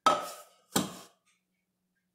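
Two sharp knocks of kitchenware: the blender jar striking the rim of the cake pan as the chocolate batter is poured out. The first knock, right at the start, carries a brief clink; the second comes less than a second later.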